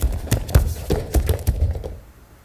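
Bare feet stepping and shuffling on gym mats with the rustle of training uniforms, a run of uneven low thuds, as two aikido practitioners move through a throw and one is drawn off balance.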